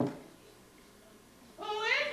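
A cat meows once: a long call that rises in pitch, starting about one and a half seconds in. At the very start, the tail of a short knock-like sound is fading out.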